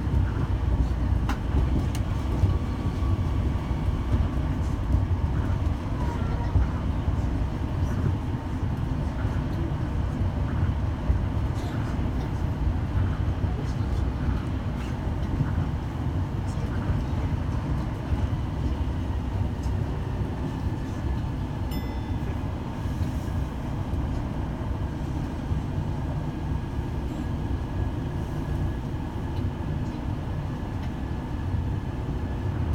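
Tama Monorail train running at speed, heard from inside the car: the steady low rumble of its rubber-tyred running gear on the guideway beam. A faint, thin, steady whine joins in during the second half.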